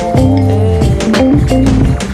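Background music with a drum beat, a bass line and sustained pitched notes.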